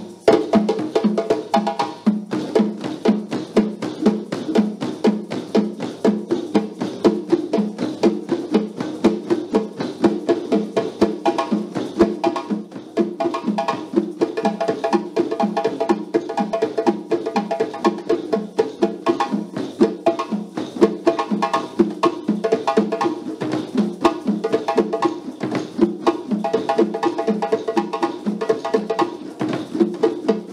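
Djembe drumming: several djembes struck with a stick and the hands in a fast, steady rhythm.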